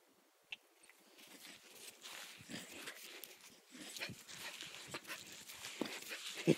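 Blue-nose pit bull puppy playing for a football: irregular scuffling and breathing noises that build from about a second in, after a single sharp click about half a second in.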